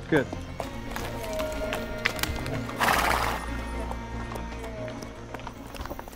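A horse blows a loud snort through its nostrils about three seconds in, with a few faint hoof clicks on a rocky trail, over background music.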